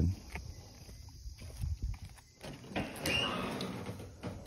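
A metal restroom door being opened and stepped through: a few light clicks and footsteps, then a louder scraping noise lasting about a second near the end.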